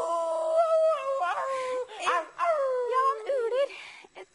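A boy's voice imitating an animal howl: a long, high wail that slowly sinks in pitch, breaks off about two seconds in, then returns as a second falling howl that wavers and fades near the end.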